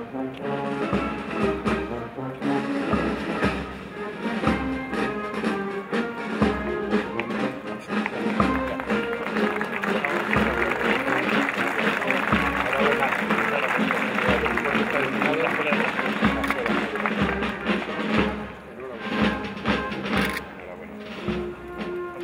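Brass band music with a steady low beat. It turns quieter for a few seconds near the end.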